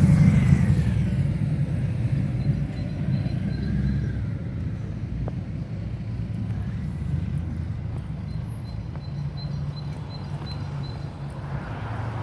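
A motorcycle passes close by, its engine note falling as it moves away and fades over the first few seconds. A low, steady rumble of road traffic continues after it.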